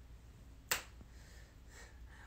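A single sharp click a bit under a second in, against a faint steady background hiss.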